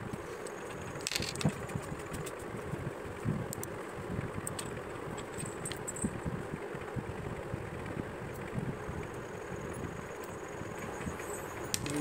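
Handling noise: scattered small plastic clicks and rattles as a button cell is fitted into a lavalier microphone's battery housing and the housing is closed. A steady background noise runs underneath.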